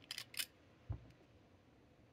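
A few quiet sharp clicks of a fountain pen being uncapped and handled, then one soft dull knock about a second in.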